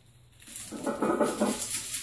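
A weightlifter's loud, strained breath under a heavy barbell during a back squat, starting about half a second in and lasting over a second.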